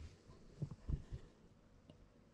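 Quiet room tone with three soft low thumps in quick succession about a second in, then a small click near the end.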